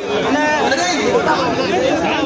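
Several men talking loudly over one another in a heated argument, amid crowd chatter.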